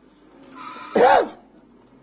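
A single short, loud, pitched call about a second in that rises and then falls in pitch, with a hiss over it, played from the soundtrack of a projected film.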